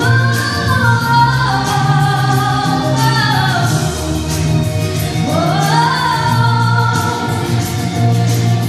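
A woman singing long held notes into a microphone over instrumental accompaniment, her voice gliding down in pitch through the first half and sweeping back up about five seconds in.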